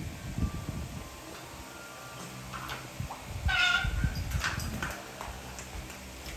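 A French bulldog puppy gives one short, high yip-like call about halfway through, among soft knocks and scuffs of paws on a tiled floor.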